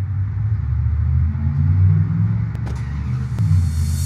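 Low, steady rumble of a car engine running, with a couple of faint clicks in the second half.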